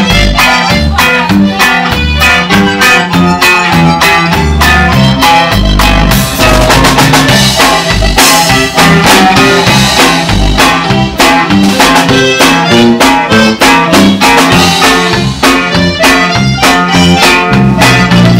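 Conjunto band playing an instrumental polka, loud: accordion lead over guitar and drum kit, with a quick, steady beat and moving bass line.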